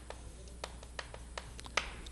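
Chalk tapping and scratching on a blackboard while characters are written, heard as a few faint, sharp clicks spaced a few tenths of a second apart.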